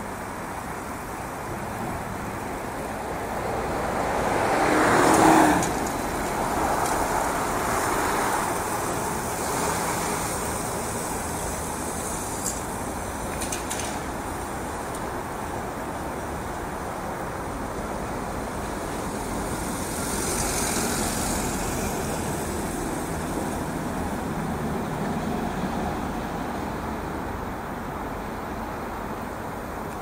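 Steady city road traffic noise from a multi-lane street. A vehicle passes close by about five seconds in, the loudest moment, and others pass around eight and twenty seconds in.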